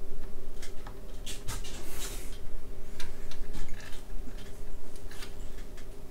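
Scattered clicks and a short scrape, about two seconds in, from a plug-in circuit board being pressed and worked into its edge connector in an HP 4261A LCR meter, to seat it fully. A steady low hum runs underneath.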